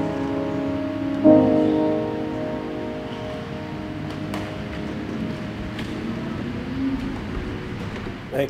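Grand piano playing the closing chords of a piece: a chord struck about a second in rings on and slowly fades away, with a couple of faint clicks as it dies.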